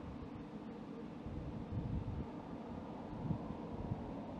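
Wind buffeting the microphone as a steady low rumble, with gusts swelling about two seconds in and again near the end, over a faint steady hum.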